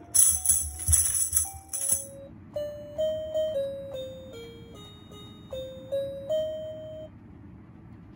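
A red half-moon tambourine jingling as a dog strikes it with its paw several times in the first two seconds, over a sustained tune. Then a small electronic keyboard plays a simple melody one note at a time.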